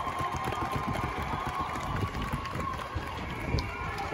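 Crowd of marchers moving along a street: a dense patter of footsteps under a general hubbub of indistinct voices.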